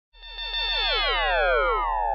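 Synthesized intro sound effect: a rapid run of short falling chirps, about seven a second, the whole run sliding steadily lower in pitch over a steady low hum.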